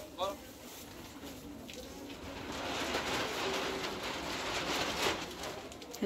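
Indistinct background voices and shop noise, with a brief high-pitched rising call just after the start and the noise growing louder in the middle.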